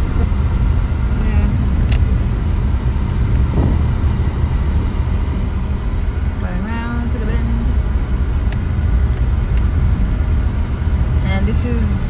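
Car engine and road noise heard from inside the cabin while driving: a loud, steady low rumble.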